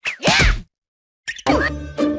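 A cartoon whack sound effect mixed with a brief vocal cry with a sliding pitch, then a short silence. Background music comes in about three-quarters of the way through.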